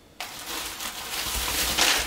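Plastic grocery bags rustling and crinkling as a bag of apples is pulled out of a carrier bag. The noise starts suddenly just after the beginning and grows louder toward the end.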